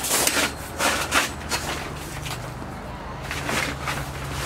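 Tarp cover of a metal-frame canopy shed rustling in short bursts as it is handled and pulled into place on the frame.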